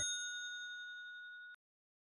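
Fading tail of a bright, bell-like ding sound effect ending the outro jingle, ringing out with a few high overtones and cut off abruptly about one and a half seconds in.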